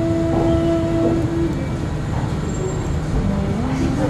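Whole-body cryotherapy chamber running at full cold, a steady rumble and rush of its nitrogen vapour flow as the chamber temperature is driven down past minus 100 degrees. A held tone sounds over it and stops about a second and a half in.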